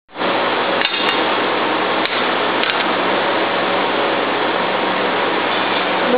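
A few light metallic clicks and taps from parts of a lead forming machine being handled, over a steady loud hiss.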